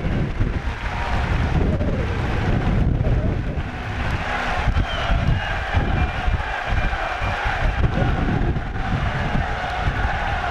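Wind buffeting the microphone in a steady rumble, over indistinct voices of a stadium crowd or a public-address announcer.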